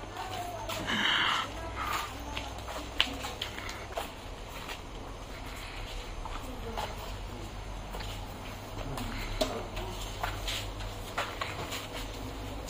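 Low, steady room hum with scattered light taps and clicks of footsteps on a tiled floor, and faint voices in the background.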